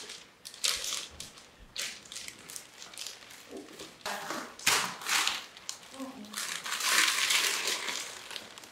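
Gift wrapping paper and tissue paper crinkling and tearing as a wrapped shoebox is opened, in irregular rustling bursts that grow louder and longer near the end.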